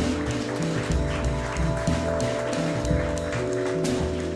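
Live jazz band playing an instrumental passage: vibraphone struck with mallets over an upright double bass line and drum kit with cymbals, keeping a steady beat.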